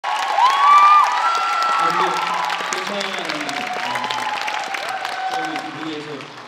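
Audience clapping and cheering, with high-pitched screams loudest in the first two seconds, then dying down.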